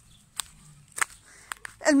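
A hen pecking at a person's shoes: about four sharp, separate taps of its beak in under two seconds.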